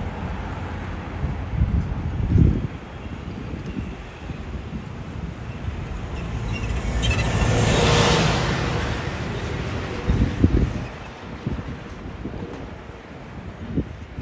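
A red double-decker bus passes close by, its noise swelling to a peak about eight seconds in and then fading, over steady street traffic. Wind buffets the microphone in short gusts, once about two seconds in and again about ten seconds in.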